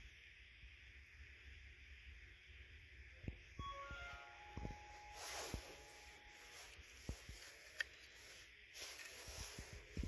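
Faint background music over a loudspeaker: a short run of notes about four seconds in and one held note, with scattered light knocks and thumps from handling and walking.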